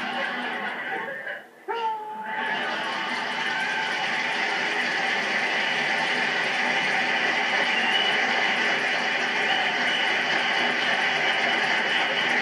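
A woman's voice briefly, then a sitcom studio audience breaking into sustained applause and laughter from about two and a half seconds in, heard through a television speaker.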